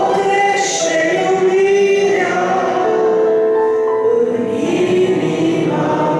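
A woman singing a Romanian Christian song into a handheld microphone over sustained musical accompaniment, holding long notes.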